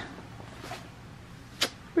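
Quiet room tone with one short, sharp swish about one and a half seconds in.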